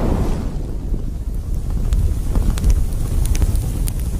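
Fire sound effect for an animated intro: a loud, steady, deep rumble with faint scattered crackles.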